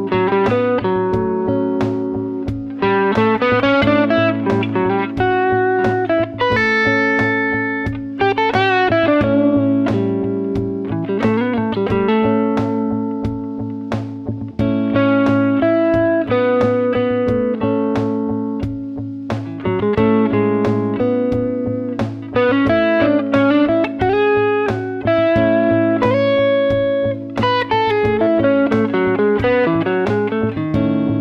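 Electric guitar (Fender Stratocaster) improvising single-note melodic lines in A Mixolydian, with bends and slides. Underneath runs a looped A major chord and a steady drum beat from a loop pedal.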